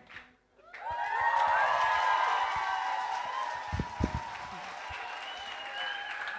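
Audience applause mixed with cheers and whoops. It breaks out about a second in, after a brief silence, and slowly fades.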